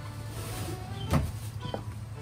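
A wooden spatula stirs a small saucepan of boiling, foaming cream and mirin, with one sharp knock about a second in. Background music and a steady low hum sit underneath.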